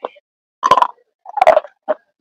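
Close-up crunching as a person chews brittle food with her mouth closed: four crunches, the two in the middle longest and loudest.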